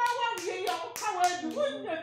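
A woman's hand claps, about five in quick, even succession, struck over her own talking.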